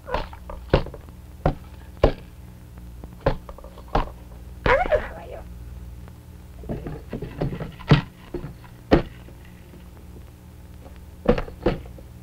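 Toy picture blocks knocking against each other and the stage ledge as they are pushed over and stacked: about ten sharp, irregular knocks, with a pair close together near the end.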